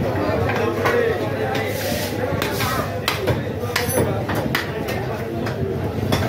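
Irregular sharp knocks of cleavers chopping beef on wooden chopping blocks, over continuous market chatter.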